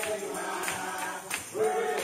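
Male gospel vocal group singing in harmony into microphones, with held notes and a tambourine striking in the background.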